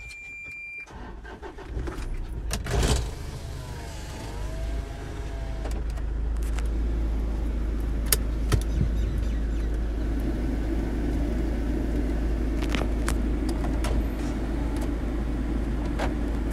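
Toyota car's engine running, heard inside the cabin as a low steady rumble that begins about a second in and grows louder over the next few seconds before holding level. A few sharp clicks and knocks sound over it.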